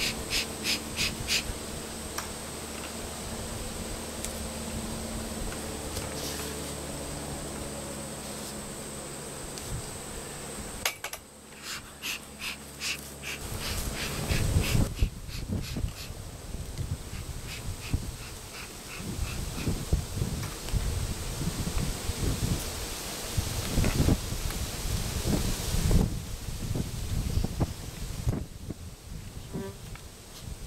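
Honey bees buzzing around open hives and a feed pail, a steady hum. From about halfway there are irregular low thuds and rustling from handling.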